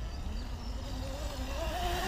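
XTM MX Pro 1200W electric dirt bike's motor whining as the bike rides up, the whine rising steadily in pitch as it picks up speed.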